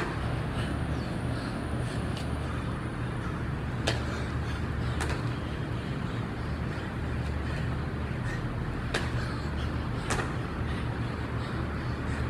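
Steady low rumble with four sharp knocks scattered through it, about 4, 5, 9 and 10 seconds in.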